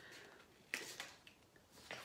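Scissors cutting out a paper circle: a few faint, sharp snips as the cut is finished.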